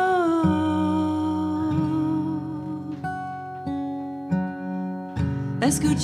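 A woman singing a slow song to her own acoustic guitar. A long sung note steps down slightly in pitch, the guitar rings on under steady notes, and a new vocal phrase starts near the end.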